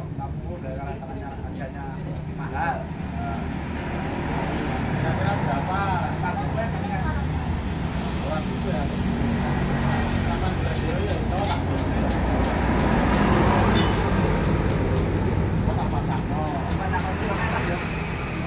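Roadside traffic noise with the rumble of motor vehicles and people talking in the background. The traffic swells to its loudest about three-quarters of the way through, with one brief sharp click near the peak.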